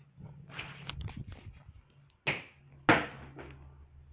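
Rustling and handling noise, then two sharp knocks a little over half a second apart, the second the louder.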